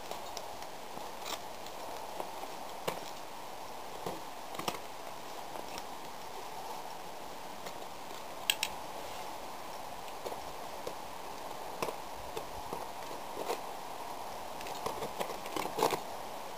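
Ice axe picks and crampon points scraping and tapping on rock: scattered sharp clicks about every second or two over a steady background hiss.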